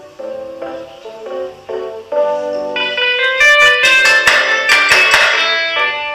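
Instrumental music: a few single pitched notes at first, then a louder, fuller passage from about three seconds in.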